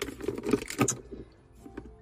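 Small clicks and rattles as cords and hard plastic objects are rummaged through in a car's centre console, with a plastic power inverter lifted out. The clicking lasts about a second, then dies down.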